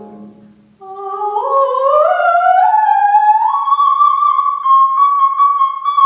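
Coloratura soprano singing a run that climbs step by step from the middle of her range to a high note, which she then holds with vibrato; a piano chord dies away just before she starts, and light piano chords sound beneath the held note.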